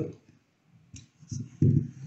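A few light plastic clicks from the multimeter probes and the small contactor being handled, with the first syllables of a man's voice near the end.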